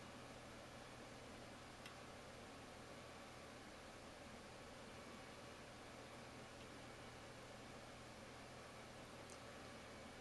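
Near silence: room tone with a steady faint hiss, broken by a faint click about two seconds in and another near the end.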